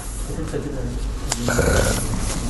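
A man's low, hesitant voice sounds in a pause in his reading, over a steady low hum of room and microphone noise, with a single sharp click about halfway through.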